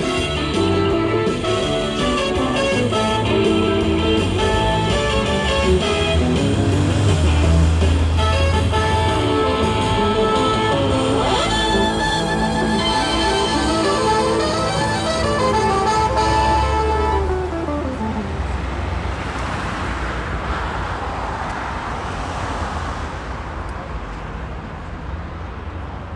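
Street musicians playing guitar music through a small amplifier. The music fades out about two-thirds of the way through, leaving traffic and street noise.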